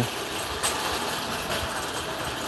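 Metal wire shopping cart being pushed along, its wheels and basket rattling in a steady clatter, with one sharp knock about two thirds of a second in.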